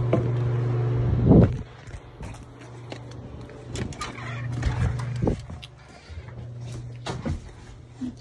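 A steady low machine hum, loud at first and dropping off sharply about a second and a half in after a loud knock. Scattered knocks and handling noise follow.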